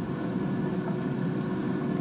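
Air fryer running as it preheats: its fan gives a steady hum.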